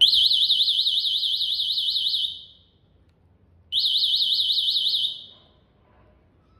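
Electric-scooter anti-theft alarm sounding its find-my-scooter signal, triggered from the wireless remote. A fast, high warbling siren tone comes in two bursts, one of about two seconds and a shorter one after a pause, each fading out at the end.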